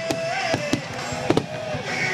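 Aerial fireworks shells bursting, three sharp bangs roughly two-thirds of a second apart, with music carrying on underneath.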